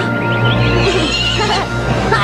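A horse whinnying, a cartoon sound effect, over steady background music; the wavering whinny comes from about half a second in.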